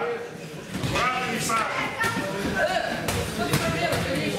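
Kickboxing strikes landing on gloves and body, about five sharp thuds, over short shouted calls from people around the ring.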